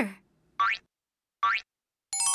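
Cartoon 'boing' sound effect played twice, about a second apart, each a short, quick rising pitch sweep.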